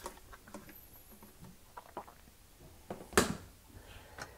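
Faint clicks and light taps of plastic dishwasher parts being handled as the lower spray arm is lifted out of the tub, with one short, louder clatter about three seconds in.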